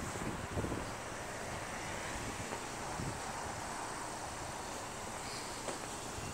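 Steady outdoor background noise, an even hiss, with a couple of soft bumps from the phone being carried.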